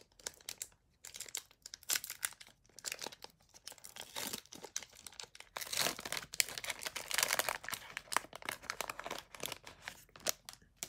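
The foil wrapper of a Pokémon Hidden Fates booster pack being torn open and crinkled by hand, a dense run of crackling that is busiest and loudest in the second half.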